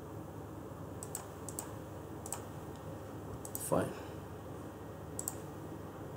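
A few scattered computer keyboard and mouse clicks, picked up by a desk microphone over a steady low background noise. One louder, brief sound with a falling pitch comes a little before the four-second mark.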